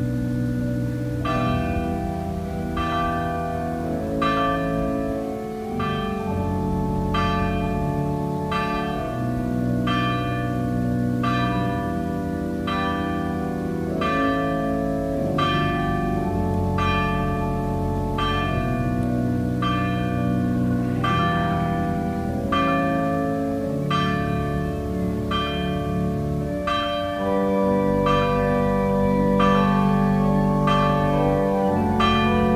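Church bells struck at a steady pace, a little faster than one stroke a second, over sustained organ chords.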